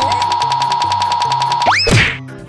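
Cartoon sound effect: a steady buzzing tone pulsing rapidly, a comic shaking effect, ending in a quick upward pitch glide like a boing near the end. Background music plays underneath.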